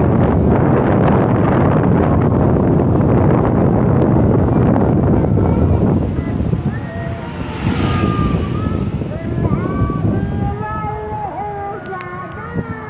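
Wind rumbling on the microphone over a vehicle's running noise, loud for about six seconds; then it eases and people's voices come up in the background.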